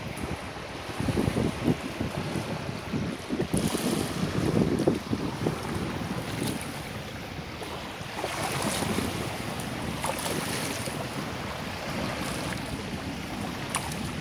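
Wind buffeting the microphone over shallow surf washing across wet sand. The low gusts are heaviest in the first few seconds, and the hiss of water swells and fades a few times.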